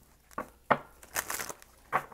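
A tarot deck being shuffled by hand: a few short slaps and rustles of the cards, with a brief riffle about a second in.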